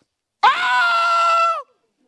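A person's loud, high-pitched vocal cry, held steady for about a second after a quick rise in pitch and dropping away at the end, like a sustained exclamation.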